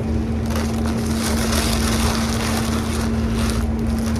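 Paper sandwich wrapper rustling and crinkling as it is handled, from about half a second in until shortly before the end, over a steady low hum.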